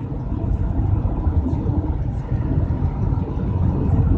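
Steady low rumble of a moving car, road and engine noise, heard from inside the cabin.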